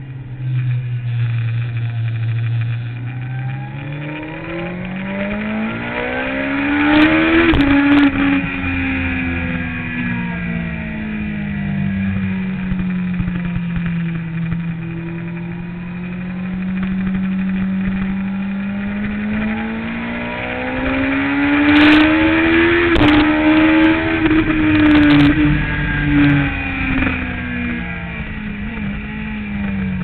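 Sport motorcycle engine heard from on board at speed. Its pitch climbs hard twice under acceleration, each time winding down slowly as the rider eases off, with a few sharp clicks near each high point.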